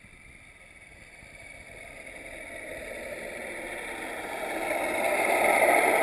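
Radio-controlled model boat running on the water, its motor and wash growing steadily louder as it approaches and loudest near the end.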